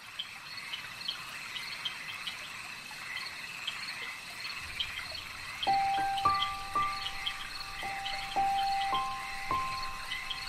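Ambient meditation music: a steady background of rapid, high-pitched chirping from a night nature recording of frogs and insects, then about six seconds in a slow melody of clear held notes enters.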